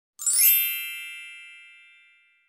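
A bright chime rings once about a quarter second in and fades away slowly.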